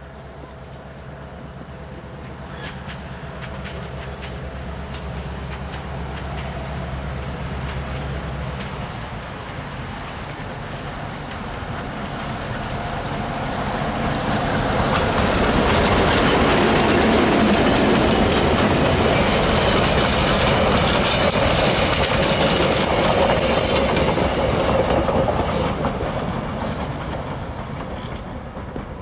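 A diesel passenger train, an EMD F7A locomotive hauling bi-level coaches, approaching and passing. A low, steady engine drone grows at first, then wheels clatter over rail joints as the coaches roll by, loudest in the second half before fading near the end.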